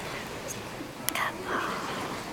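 Hushed, whispered voices in a large hall, with a sharp click about a second in.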